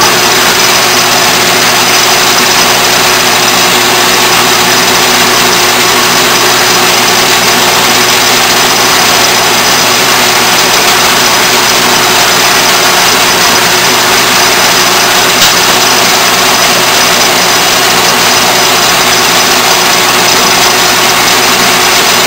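Atlas metal lathe switched on at the start and then running steadily: motor and belt-and-gear drive turning the chuck, with the carriage under power feed as the tool takes a pass along a small bar.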